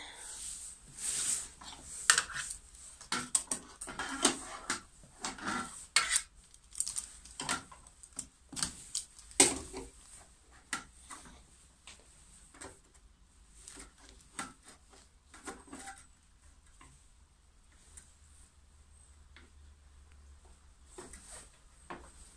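Irregular light clicks, knocks and metallic rattles from handling a table saw's rip fence and a folding ruler while measuring and setting a 20 cm cut, with the saw switched off. The clicks come thick for the first two-thirds or so and then thin out.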